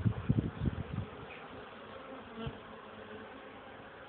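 Honeybees buzzing in a steady hum at the hive. There are a few low thumps in the first second.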